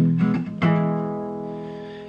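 Taylor acoustic guitar: a strum at the start and a last strum about half a second in, then the final chord rings and slowly fades away.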